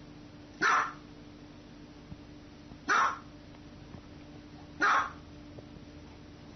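Small white dog barking three times, single short barks about two seconds apart.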